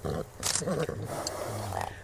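A horse's low, rough vocal sound, lasting about a second and a half and starting about half a second in.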